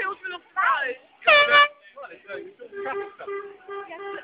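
Nearby people talking and calling out, with one loud, high, held call about a second in and a run of short notes on one pitch near the end.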